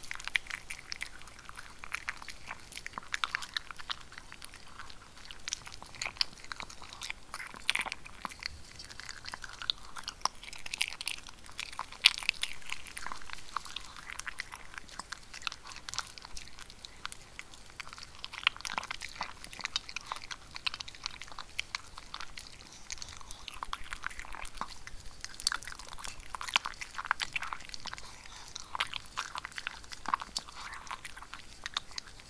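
A maltipoo crunching dry kibble from a plastic bowl, close-miked: a steady run of crisp bites and chews.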